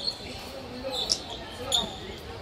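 Badminton rally in a sports hall: a few sharp racket-on-shuttlecock hits and shoe squeaks on the wooden court, about a second apart.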